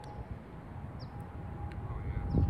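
Putter striking a golf ball on a lag putt: a faint single click about one and a half seconds in, over a steady low outdoor rumble.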